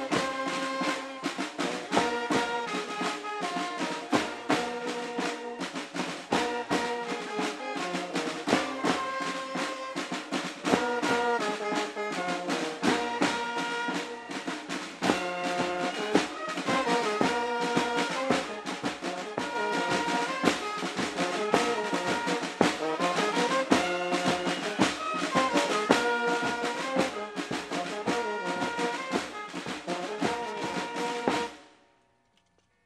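A marching band playing brass over snare and bass drums, with a steady beat.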